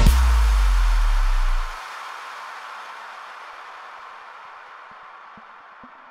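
Big room house track: a deep bass boom that slides down in pitch and stops about a second and a half in, then a hissing wash that slowly fades away.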